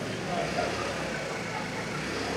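A steady low motor hum under faint background voices, with no sudden sounds.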